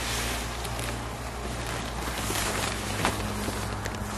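Camouflage pop-up tent fabric rustling steadily as the torn tent is pulled open and handled close by, with a few faint crackles.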